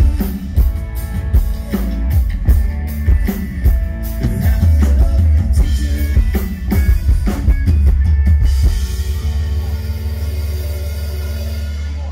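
Live rock band playing an instrumental passage on drum kit, electric guitars and bass. About nine seconds in the drums stop and a held chord rings and slowly fades.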